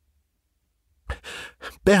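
Silence for about a second, then a man's breathy, gasping in-breaths that run into speech near the end.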